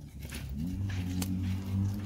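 Firewood log set onto a burning wood fire, knocking against the other logs with a few sharp clicks and one crisp crack about a second in. A low, steady, pitched drone runs underneath.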